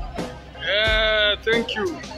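A loud, high-pitched held vocal call lasting under a second, with a shorter falling call just after it, over background music with a beat.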